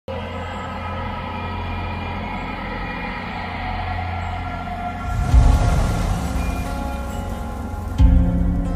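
Cinematic soundtrack music of steady held chords, with a deep low hit about five seconds in.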